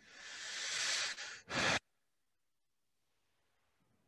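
A person breathing out heavily close to the microphone: a rushing exhale that swells for about a second, then a short sharp puff. The sound then cuts off abruptly to near silence.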